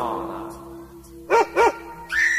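A held musical note fades out, then two short barks like a dog's come about 0.3 s apart, each rising and falling in pitch.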